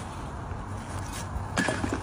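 Wind rumbling on the microphone as a pot of hot water is flung into freezing air, with a faint high hiss. About a second and a half in, the sound changes suddenly to a short, louder pitched sound.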